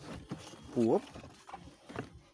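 Clicks and scrapes from the Android head unit's plastic face and metal chassis being pulled out of a BMW E39 dash. A single short squeal rises in pitch just before the middle and is the loudest sound.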